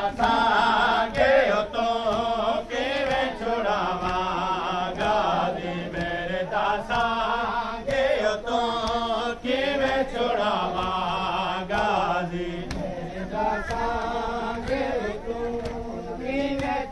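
A group of men chanting a noha, a Shia mourning lament, in a wavering unison melody, with sharp regular slaps of chest-beating (matam) keeping time.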